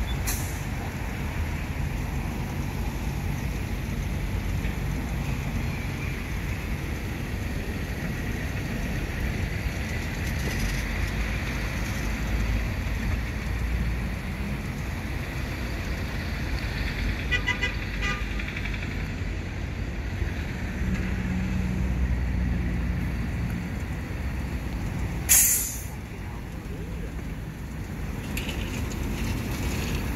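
Steady low running noise from a tyre air inflator while a car tyre is filled. About 25 seconds in, air escapes in one short, sharp hiss, and the running noise then drops.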